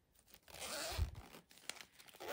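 Zipper of a zip-around photocard binder being pulled open in one rasp of about half a second, starting about half a second in, ending with a soft bump of handling.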